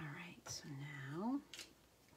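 A woman's voice speaking softly: a short murmured phrase, lasting just over a second, that rises in pitch at its end.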